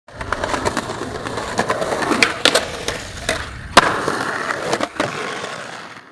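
Skateboard rolling, with a run of sharp clacks and knocks from the board, the loudest just before four seconds in; the sound fades out at the end.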